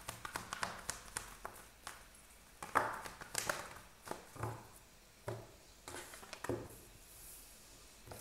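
A deck of tarot cards being shuffled by hand: irregular soft taps and flicks of the cards, with a few duller knocks from about halfway in.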